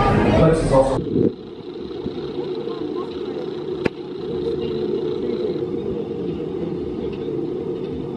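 Steady low rumble of a B&M wing roller coaster (X-Flight) as its train crests the top of the lift hill. There is a single sharp click about four seconds in.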